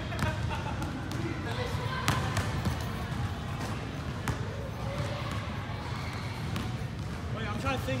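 A basketball bouncing on a hardwood gym floor in a few separate, irregularly spaced bounces, the loudest about two seconds in.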